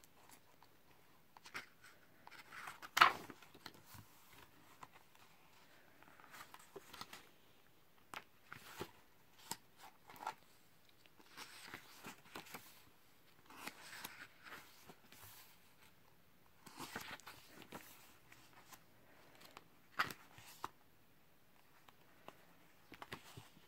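Pages of a large photo book being turned by hand: soft paper swishes and light rustles every second or two, loudest about three seconds in.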